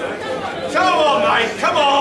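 Background chatter of people talking, with one voice standing out twice above the murmur.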